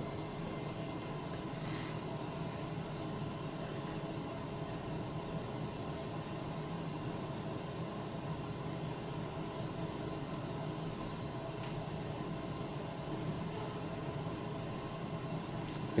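Steady indoor background hum with a few constant tones in it, and no distinct event: room tone.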